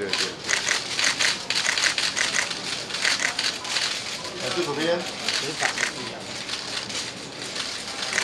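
Many camera shutters clicking rapidly and irregularly from a pack of press photographers shooting at once, with a brief voice calling out about halfway through.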